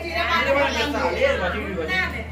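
Several people chattering and talking over each other, with women's voices, over a steady low hum.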